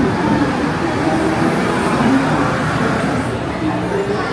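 Steady rumbling noise of the PeopleMover station's moving platform and cars, with a faint low hum and indistinct voices of people around.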